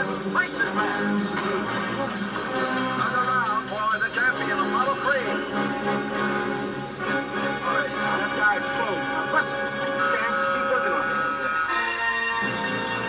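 A movie soundtrack playing from a television and picked up across the room: a steady dramatic music score with voices mixed in under it.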